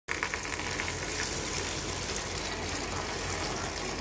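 A thin stream of water pouring steadily and splashing into a small tub of shallow water crowded with small floating balls.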